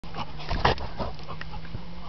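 A Rhodesian Ridgeback puppy making a few short, sharp sounds between about half a second and a second in, the loudest just past half a second.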